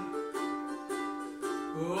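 Ukulele strummed in chords, about two strums a second, between sung lines.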